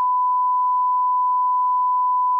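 Steady 1 kHz reference test tone, the beep that goes with television colour bars: one pure, unbroken pitch.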